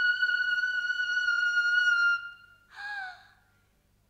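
A single high musical note held dead steady, stopping about two seconds in, followed by a short falling note near three seconds.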